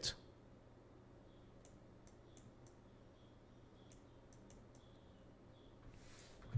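Computer mouse clicking faintly, about eight short, sharp clicks scattered across the middle seconds over near-silent room tone.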